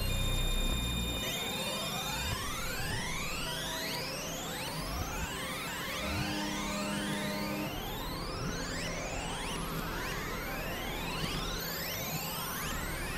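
Experimental synthesizer drone music: many overlapping tones sweeping steadily upward in pitch, repeating throughout, over low held drone notes that shift every second or two.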